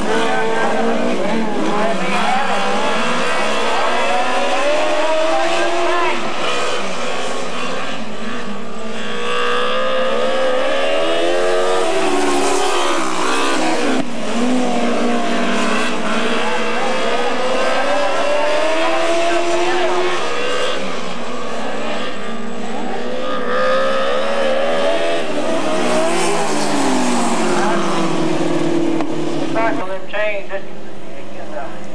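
Engines of several sportsman-class open-wheel dirt-track race cars at racing speed. Their pitch climbs for a few seconds as the cars accelerate down the straights, then drops as they lift for the turns, about every five to six seconds.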